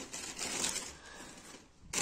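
Plastic bags rustling and crinkling as they are handled and searched through, busiest in the first second and then dying away.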